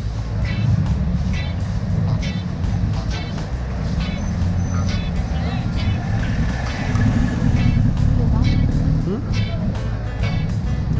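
Busy street traffic: the engines of taxis and a three-wheeled tuk-tuk driving past, over a steady low rumble, louder in the second half, with an engine rising in pitch near the end. Voices of passers-by and music with a steady beat run underneath.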